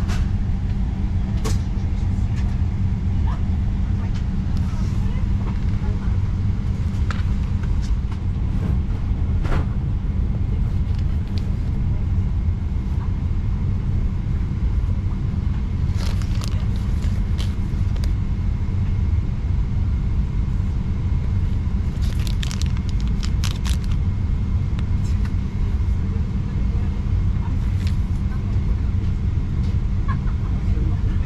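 Steady low rumble of an airliner cabin in flight, with a few short clicks and rustles of small items being handled.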